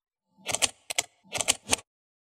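Animated logo sound effect: a quick run of about five short, sharp clicking sounds.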